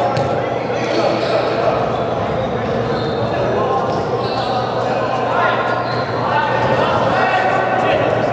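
Players' voices calling out across a large indoor sports hall, with the thuds of a soccer ball being kicked on artificial turf, all echoing in the hall over a steady low hum.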